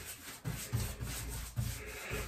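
Paintbrush stroking paint onto painted wooden wall panelling: a soft, repeated brushing scrape, several short strokes.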